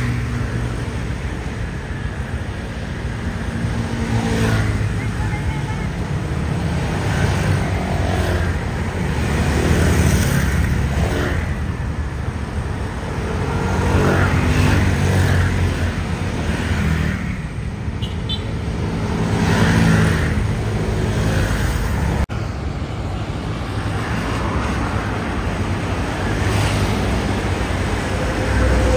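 Heavy street traffic of many motor scooters and motorcycles riding past among cars, the engine noise swelling and fading as bunches of riders go by. There is an abrupt cut about three-quarters of the way through, after which cars and scooters keep passing.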